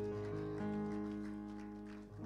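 Keyboard holding soft sustained chords at the close of the hymn, the chord shifting once or twice early on and then fading away.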